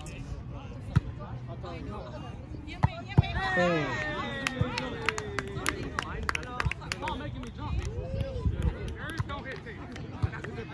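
A volleyball being hit during an outdoor rally: sharp slaps of hands and forearms on the ball about a second in and twice just before three seconds in, then players shouting, with one long falling call, and scattered short clicks.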